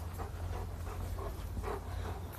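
Several short, soft panting breaths over a steady low rumble.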